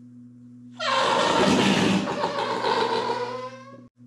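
Oversized whoopee cushion being flattened, letting out its air in one long raspy fart noise. It starts about a second in, sags slightly in pitch and fades out after about three seconds. The noise is a little disappointing, not very good.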